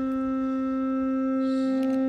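Conch shell blown in one long, steady held note for aarti.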